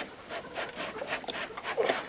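In-water install tool sawed back and forth between two plastic floating dock sections, its rod rubbing against the floats in a quick run of short scraping strokes, about six a second, as it is worked under the dock toward the coupler hole.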